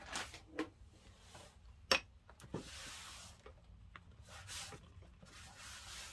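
Faint handling sounds as a wet wipe is fetched: a sharp click about two seconds in, then about a second of rustling, with a few lighter knocks, over a low steady hum.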